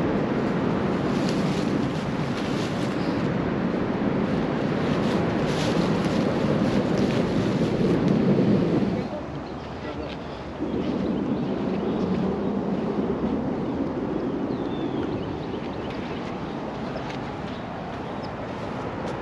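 Wind rumbling steadily on an outdoor camera microphone, dropping away briefly about nine seconds in and then coming back.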